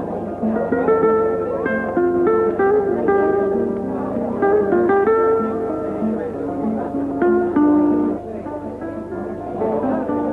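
Background music: a plucked guitar playing a melody of single notes, a little quieter near the end.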